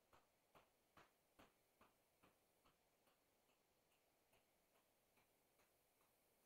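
Faint, evenly spaced ticking, about two and a half ticks a second, loudest in the first couple of seconds and fading away near the end.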